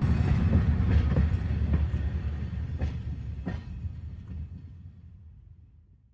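A train running on track, a heavy low noise with a few sharp clicks. It starts suddenly and fades away over about six seconds.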